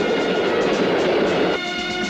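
A moving train, a dense running noise of wheels and cars, under orchestral film music. The train noise cuts off suddenly about one and a half seconds in, leaving the music alone.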